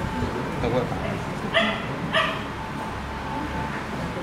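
A dog barking twice, about half a second apart, a little over a second and a half in.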